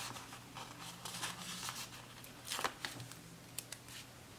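Faint rustling and crinkling of paper sticker sheets being handled, in a few short spells, the loudest about two and a half seconds in.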